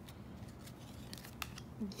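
Baseball cards being slid off a hand-held stack one after another: faint papery sliding of card stock against card stock with scattered soft clicks, one sharper snap about a second and a half in.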